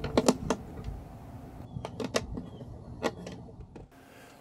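Plastic latches on a polymer utility box being pressed shut: a quick cluster of sharp clicks in the first half-second, followed by a few fainter scattered clicks and knocks.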